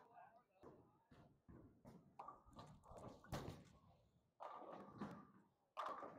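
Faint bowling-alley noise: background voices with scattered clatter of balls and pins, and one sharp crack about three seconds in.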